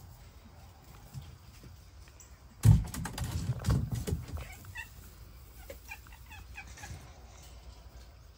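Red foxes at play: a sudden loud thump about two and a half seconds in, then a second or so of scrambling, rattling knocks, followed by a few short high squeaks.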